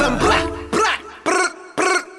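The song's beat drops out, and a dog barks and yelps a few times in short, separate calls during the break.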